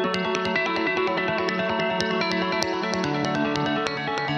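A rock song's guitar-led intro playing from a multitrack mix on a Behringer WING digital console, taken straight from the desk's output without processing. The music starts just before this moment and keeps a steady level: sustained chords with short, regular picked notes above them.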